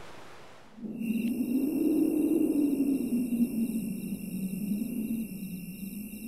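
A steady low rushing drone with faint, thin, high electronic tones over it, some of them pulsing, starting about a second in: a production logo's sound bed.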